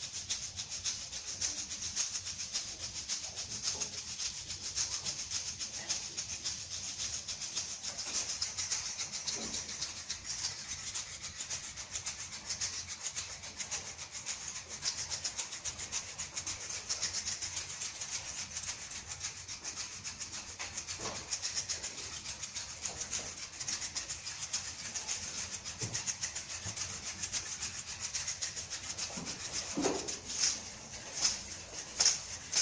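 An ensemble of egg shakers played together in a fast, steady rhythm: a continuous bright, high rattle of closely spaced strokes.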